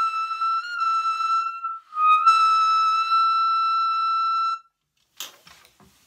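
Lineage tenor saxophone playing two long held high notes, top F, with a short break between them; the second is held about two and a half seconds. The note speaks easily, without strain.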